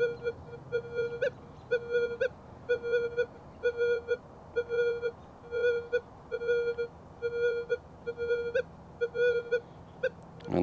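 Minelab Manticore metal detector beeping once per sweep of its 8-inch coil over a gold nugget of under a tenth of a gram, about thirteen short buzzy beeps of the same pitch, a few ending in a brief higher blip. It is the detector's target response to this tiny nugget at about the farthest distance it still sounds good.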